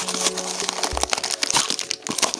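Small cardboard blind box being opened by hand: the card flaps and packaging rustle and crinkle with many small clicks and crackles, and there is a soft thump about a second in.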